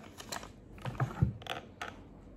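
A quick string of light taps and paper rustles as a small handmade paper book is handled on a table, with a couple of duller knocks about a second in.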